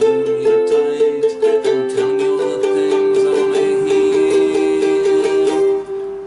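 Ukulele strummed rapidly, starting on an F chord and changing to another chord about one and a half seconds in.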